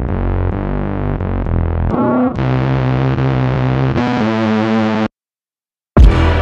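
Background electronic music: sustained synthesizer chords over a steady bass, changing chord about two seconds in and again near four seconds, then cutting off abruptly about a second before the end.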